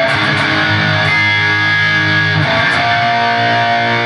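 Les Paul-style electric guitar through an amplifier: a G-sharp chord struck and held, then a change to a held B-flat chord about two and a half seconds in.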